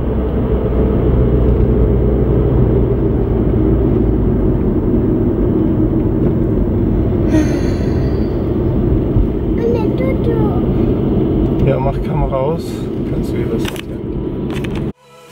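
Steady low rumble of a car's engine and tyres, heard from inside the cabin of a moving car.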